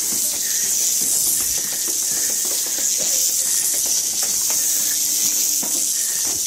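A loud, steady high hiss with faint scattered clicks underneath.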